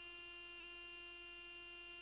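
Faint steady electrical hum, a held tone with several higher tones above it that neither rises nor falls.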